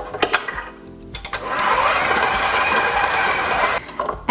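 KitchenAid 7-quart stand mixer beating softened cream cheese with its flat paddle: a few clicks at the controls, then the motor runs steadily for a couple of seconds and cuts off suddenly near the end.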